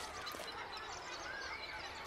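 Faint outdoor ambience with a few soft bird chirps.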